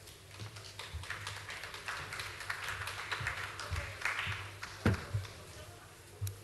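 Light applause from a seated hall audience, building over a few seconds and fading out after about four and a half seconds. It is followed by two low thumps.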